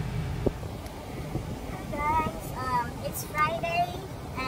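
A woman's voice speaking briefly over a low steady rumble inside a car, with a single click about half a second in.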